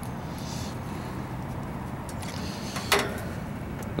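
Steady low background hum, with one short sharp click about three seconds in as a brass quarter-inch flare valve core depressor is unscrewed from a refrigerant gauge hose.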